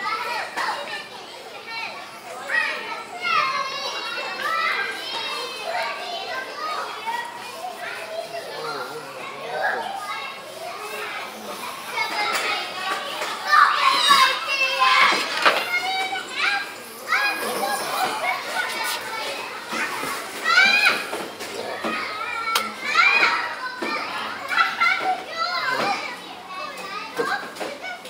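Children playing, with many high children's voices calling and shouting, loudest around the middle of the stretch.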